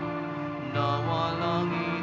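Slow devotional church music with sustained notes, moving to a new chord about three-quarters of a second in.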